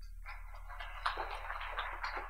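Audience applauding, starting about a quarter-second in, over a steady low electrical hum.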